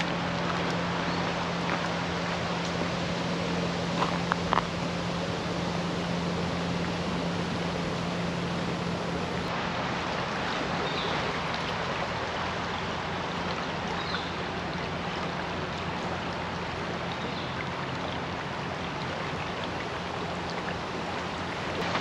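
Shallow river water flowing steadily over a rocky bed, a constant rushing, with a faint low hum beneath it during the first half.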